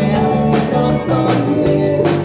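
Live rock band playing with a steady beat: drum kit, bass, electric guitar and keyboard, with a hand tambourine shaken along.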